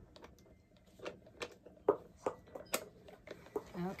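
Metal clinks and clicks of a wrench being fitted onto the axle bolt of a dog wheelchair cart's rear wheel: a handful of sharp, irregular clicks, the loudest about halfway through.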